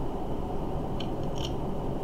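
A man drinking from a plastic bottle, with two short clicks about a second in.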